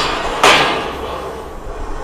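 Eight-foot galvanised steel lift-and-slide sheep-yard gate being slid along its frame. A metal rattling scrape starts sharply about half a second in and tails off.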